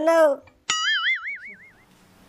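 A cartoon-style "boing" sound effect: a sudden twang whose pitch wobbles up and down, fading out over about a second.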